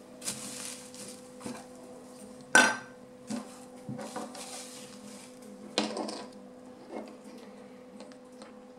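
Small plastic toy furniture pieces handled and set down on a wooden tabletop: scattered light clicks and clacks, the sharpest about two and a half seconds in and another near six seconds.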